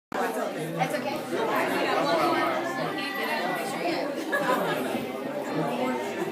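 Many people talking at once: overlapping conversation and chatter of a group of voices, with no single speaker standing out.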